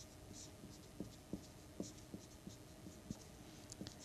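Marker pen writing on paper: faint scratching strokes and light irregular taps of the tip.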